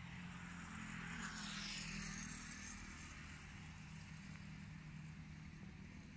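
Motor vehicle traffic: a steady low engine hum, with a vehicle passing that swells and fades about two seconds in.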